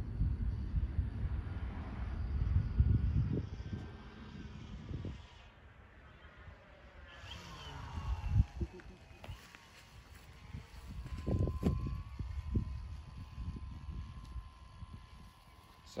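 Wind buffeting the microphone with a heavy low rumble for the first few seconds. After that, a faint whine from a model airplane's brushless electric motor and propeller at low throttle bends in pitch as the plane passes overhead, then settles to a steady tone. There are a few short gusty thumps.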